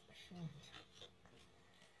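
Faint rustling and scraping of trading cards and a foil card pack being handled, with a brief low murmur from a man falling in pitch near the start.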